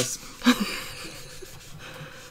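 A short breathy laugh, then a makeup wedge rubbing soft pastel into paper with a soft, even scrubbing.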